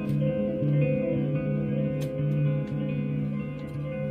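Archtop guitar played solo: slow, held notes and chords ringing over one another, with a sharp click about halfway through.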